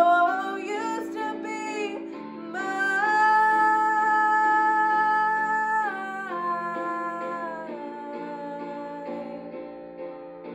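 A woman singing solo over an instrumental backing track. Her voice glides up in the first second, holds one long note from about two and a half to six seconds in, then steps down to a lower note. The backing fades away over the last few seconds.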